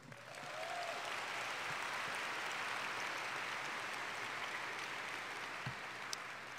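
Audience applause, building over the first second, then steady, easing slightly toward the end.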